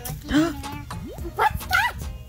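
Border Terrier puppy giving short, high yips and whimpers: one near the start and a quick run of rising calls in the second half.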